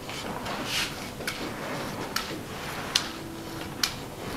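Brass gua sha scraper rubbing in quick strokes over oiled skin, with a sharp click about once a second.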